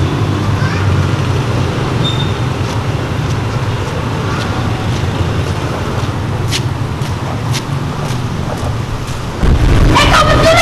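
Steady low outdoor rumble, typical of distant road traffic, with a few faint clicks. The sound gets abruptly louder near the end.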